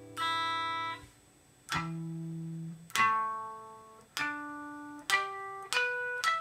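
Electric guitar playing single notes one at a time, about six plucks, each left to ring and fade before the next. The strings are being checked on a tuner.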